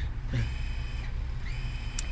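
Steady low hum of a car's idling engine, heard from inside the cabin.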